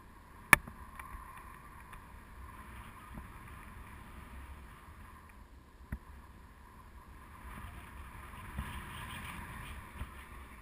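Airflow rushing over the camera's microphone during a tandem paraglider flight, a low steady rush that swells in the last couple of seconds. A sharp click about half a second in, the loudest sound, and a smaller one near six seconds.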